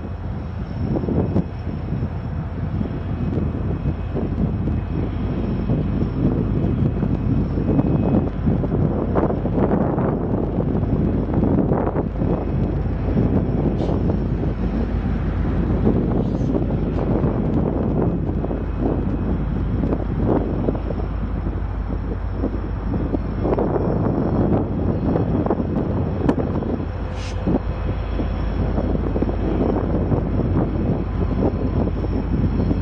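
Norfolk Southern diesel locomotives running as they slowly move a train of covered hoppers, with a steady low engine rumble. Wind buffets the microphone throughout.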